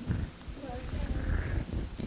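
Faint murmur of several audience voices replying, over low room rumble.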